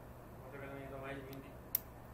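A single sharp click near the end over a steady low hum, with a faint murmur of voice earlier on.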